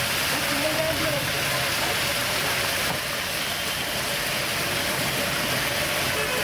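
Crab pieces deep-frying in a kadai of hot oil: a steady sizzle of bubbling oil.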